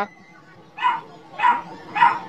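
A dog barking: after a short quiet moment, three short barks about half a second apart, starting just under a second in.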